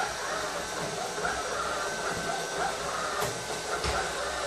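Aldi Stirling robot vacuum cleaner running on a timber floor: a steady whir of its motor and brushes, with a couple of short clicks near the end.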